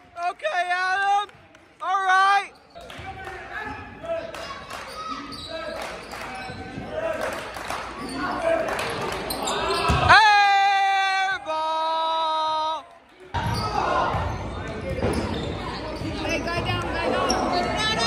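Basketball game in a large gym: a ball bouncing on the hardwood court amid shouts and chatter from players and spectators. About eleven seconds in, a steady horn sounds for about a second and a half.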